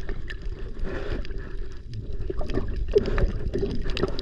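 Water noise heard underwater, muffled and low, from a swimmer moving through the water: a steady low rumble with scattered short clicks and gurgles.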